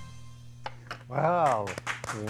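The end of a song's backing track fades out, leaving a low steady hum. About a second in, a voice calls out once with a rising and falling pitch, with a few sharp clicks near the end.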